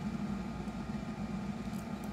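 Steady low hum with a faint even hiss of room noise, with no distinct event.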